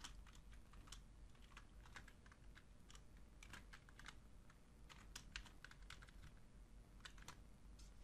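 Faint computer keyboard typing: scattered, irregular keystrokes as a formula is edited.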